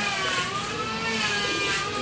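A steady engine-like drone, its pitch wavering slightly.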